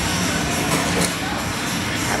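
Background music over the steady din of a busy game arcade.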